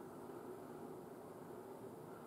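Quiet room tone: a faint, steady hiss with no distinct sounds.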